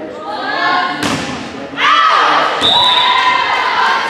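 A volleyball smacked by a hand about a second in, then spectators shouting and cheering loudly, echoing in the gym.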